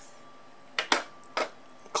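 Plastic cab door of a Bruder toy Scania fire truck being swung shut by hand: a few short sharp plastic clicks and taps about a second in.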